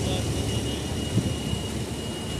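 Running noise of a moving passenger train coach: a steady rumble of wheels on the track with a thin high steady tone over it, and a single knock about a second in.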